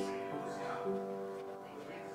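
Slow piano music: held chords ringing and fading, with a new chord about a second in.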